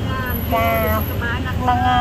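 An elderly woman speaking in Khmer in long, evenly held phrases, over a steady low rumble.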